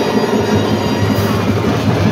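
High school pep band playing loudly in a gymnasium, with brass horns, saxophones and drums.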